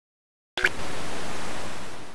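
A sharp click about half a second in, as the remote is pressed, then steady hiss of analog television static (white noise) that begins to fade near the end.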